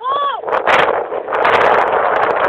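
A shout, then from about half a second in a loud rushing hiss with crackle as a Mentos-and-cola bottle erupts and shoots a spray of foam.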